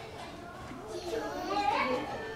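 Background chatter of onlookers, children's voices among them, growing louder and higher near the end.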